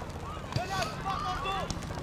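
Several young players' voices calling out in short, high shouts across the pitch, over a steady low hum.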